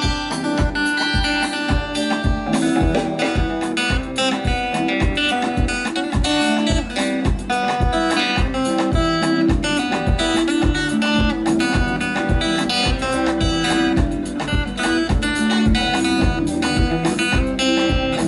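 Live band playing an instrumental passage: an acoustic guitar picking a melody over drums keeping a steady beat of about two to three thumps a second.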